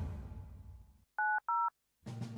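Two short telephone keypad touch-tone (DTMF) beeps, one about a second in and another just after. Each beep is two steady tones sounded together, with the pitch pair changing from the first beep to the second, as when two digits are dialed.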